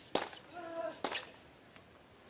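Tennis ball struck hard by a racket twice, about a second apart, the first hit the loudest moment. Between them comes a short, steady squeak, typical of a tennis shoe skidding on the hard court.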